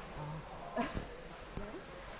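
Faint, indistinct human voices in the background, in short broken fragments, one rising in pitch about a second in.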